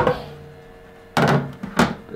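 Plastic lid of a Flashforge Dreamer 3D printer being handled and set onto its frame: a thunk at the start, a scraping shuffle about a second in, then two sharp plastic clacks near the end. Under it runs a steady low hum from the switched-on printer.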